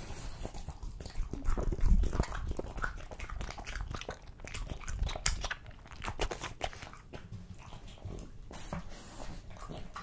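French bulldog biting and chewing raw chicken fillet close to a microphone: an irregular run of smacks and bites, loudest about two seconds in.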